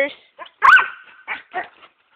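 A dog's high yip about two-thirds of a second in, trailing off into a brief whine, followed by a couple of shorter, fainter yips.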